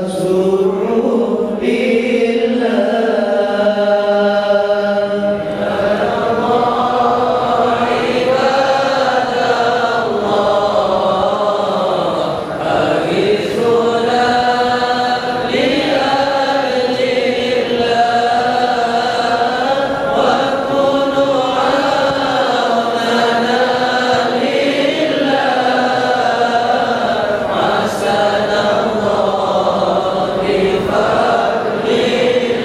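A congregation of men chanting a devotional qasidah together in unison: a slow melody with long held notes.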